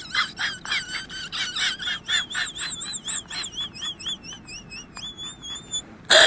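High-pitched chirping, repeated quickly, that turns into a warbling whistle-like tone wavering up and down about three times a second and ends on a steady held note.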